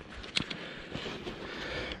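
Steady scraping and rustling noise from a hand trowel working the soil of a freshly dug hole in a grass field, with a sharp click about half a second in.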